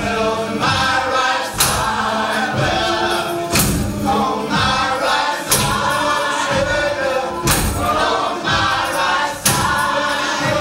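Live Creole gospel-style song: a group of voices singing together over tambourines and hand percussion, with a strong drum beat landing about every two seconds.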